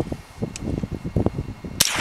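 A single scoped rifle shot near the end, sudden and sharp, after a stretch of low background noise.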